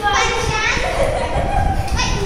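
Young children calling out excitedly as they play, one voice rising and falling at the start and then holding a steady note.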